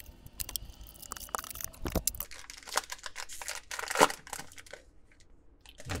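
Clear plastic shrink wrap being ripped and crinkled off a cardboard trading-card box, with a run of sharp crackles and tears and one loud rip about four seconds in. After that comes quieter handling.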